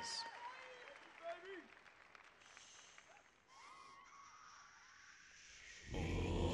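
Faint audience applause and scattered cheers in a large hall, slowly dying down. At the very end a male a cappella group comes in loudly with deep bass voices.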